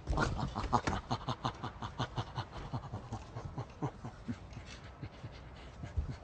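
A man's rapid, rhythmic panting in imitation of a chimpanzee, about five or six breaths a second, strongest for the first two seconds and then fading.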